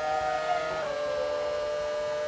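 Formula One car's 2.4-litre V8 engine at high revs, heard onboard on a straight at about 285 km/h: a steady, high-pitched note that dips slightly in pitch a little under a second in.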